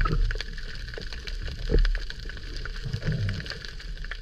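Underwater sound through an action camera's waterproof housing: a steady low rumble of moving water with scattered small clicks and a few dull thumps.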